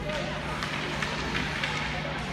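Ice hockey skate blades scraping the ice and sticks clacking as young players skate off, with a few sharp scrapes in the middle, over distant voices and a steady low hum in the arena.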